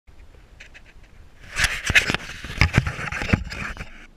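Handling noise from a small camera being set down inside a large corrugated pipe: about a second and a half in, a loud run of scraping with several sharp knocks against the pipe wall, dying away near the end.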